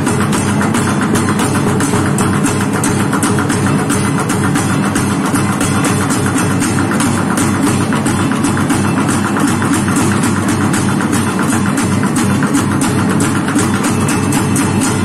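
Bucket drumming: an ensemble beating sticks on plastic buckets and a blue plastic barrel, a fast, dense rhythm of strokes that holds steady throughout.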